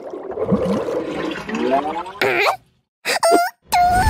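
Cartoon sound effect of bathwater rushing and gurgling down the drain, rising in pitch as it ends about two seconds in. After a brief silence come short, squeaky cartoon vocal sounds.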